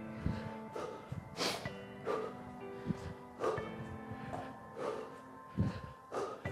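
Background music with sustained notes, over a regular beat of footfalls and hard breaths from a person doing side-to-side skater jumps, about one landing every 0.7 seconds.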